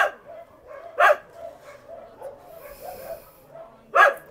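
Shelter dogs barking: two loud barks about a second apart, over fainter, continuous barking from other dogs.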